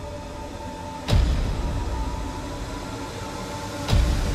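Dramatic soundtrack music with a deep boom about a second in and another near the end, each trailing off into a low rumble.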